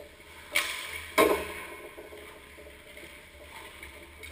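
Two sharp cracks of hockey sticks and pucks, about half a second and a second in, each ringing out in the rink's echo, then quieter skating noise on the ice.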